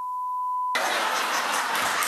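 A steady, high censor bleep covering a swear word, cutting off sharply less than a second in, followed by a loud, even rush of studio audience applause.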